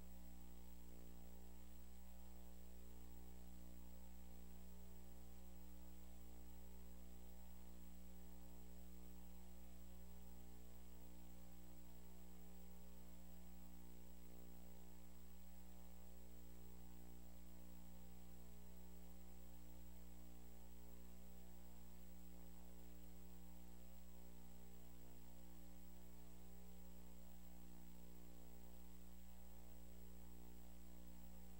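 Faint, steady electrical mains hum with a hiss and a thin high whine, with no other sound.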